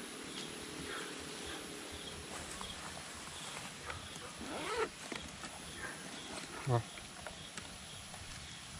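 Faint short chirps of night insects repeating in the background, with a brief human exclamation about four and a half seconds in and a short spoken word near the end.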